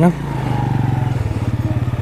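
Motorcycle engine running at low revs with a steady, fast, even putter as the bike rolls slowly over a rough, waterlogged track.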